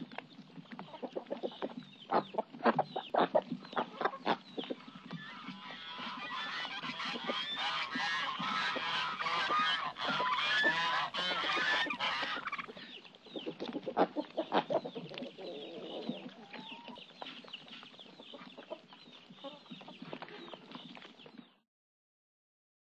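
Chickens clucking: scattered single clucks at first, then a dense overlapping chorus of many birds for several seconds, then sparser calls again. It cuts off suddenly just before the end.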